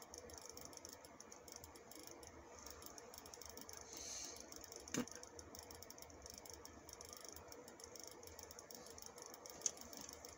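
Near silence: quiet room tone with a faint steady hum, a soft click about halfway through and another near the end.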